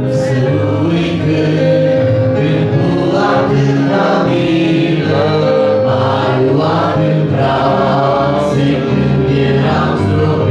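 A congregation of men and women singing a worship hymn together. The sound is continuous, with long held notes.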